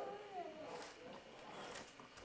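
A brief, faint cry that falls in pitch, followed by faint rustling as a Christmas stocking is handled.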